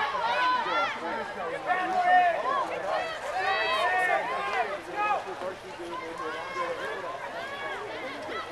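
Several voices shouting and calling out over one another from the players and poolside spectators of a water polo game. It is loudest for the first five seconds and eases off a little after that.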